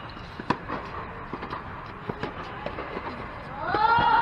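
Rally on an indoor hard tennis court: sharp pops of tennis balls hit by rackets and bouncing, the loudest about half a second in, with short sneaker squeaks between them. Near the end a player's voice calls out, rising in pitch.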